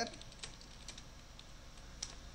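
Faint, irregular keystrokes on a computer keyboard as a line of code is typed.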